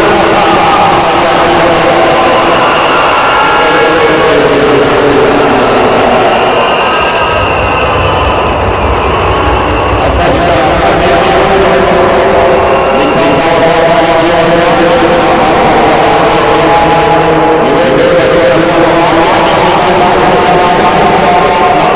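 Loud, continuous stadium crowd noise: many voices at once with overlapping held and sliding tones, never letting up.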